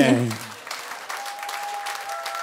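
Audience applauding, a steady patter of clapping. A man's voice trails off at the very start, and a thin steady tone sounds faintly over the clapping from about a second in.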